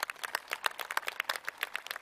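Light applause from a crowd: several people clapping, many quick irregular claps.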